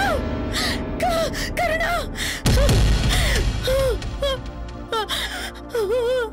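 A woman sobbing in short, rising-and-falling whimpers and sharp gasping breaths of distress, over dramatic background music. A deep low swell joins the music about two and a half seconds in.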